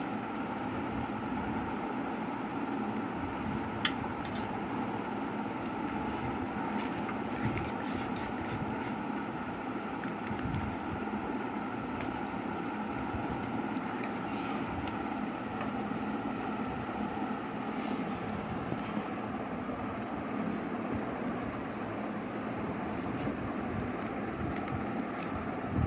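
Steady background hum with a faint murmur, and light sharp clicks from scissors snipping through folded paper, one sharper click about four seconds in.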